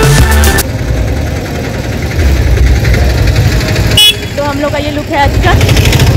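Background music that cuts off abruptly under a second in, giving way to a steady low outdoor rumble of vehicles. About four seconds in there is a short, sharp high-pitched sound, followed by women's voices talking.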